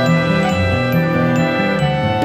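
Meditative background music: high bell-like tinkling notes over a steady held tone and a slowly stepping bass line.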